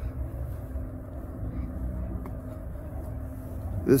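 An engine idling steadily: a low, even rumble with a faint steady hum.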